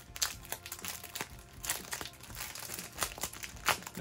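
Crinkling of the clear plastic wrap around printed paper-craft template sheets as they are handled, a run of irregular crackles.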